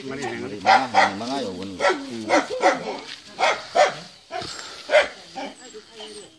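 A dog barking, about eight short barks at uneven intervals, with people's voices alongside.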